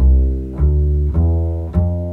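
Upright bass plucked pizzicato, one low note about every 0.6 s, each starting sharply and ringing down. The notes run through the C mixolydian scale.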